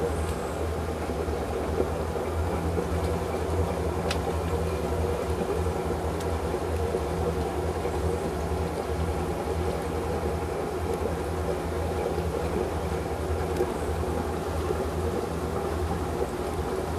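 Inboard boat engine, a MerCruiser 7.4-litre, idling with a steady low drone.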